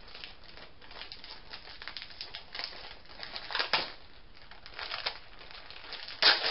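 Packaging crinkling and rustling as it is handled, in irregular bursts. Louder crinkles come about three and a half seconds in and again about five seconds in.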